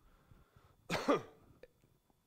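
A single cough, about a second in.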